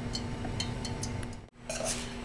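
Faint scattered ticks and light crackle from a metal spoon and wet dough being dropped into a pot of hot frying oil, over a steady low hum. The sound breaks off abruptly about three-quarters of the way through.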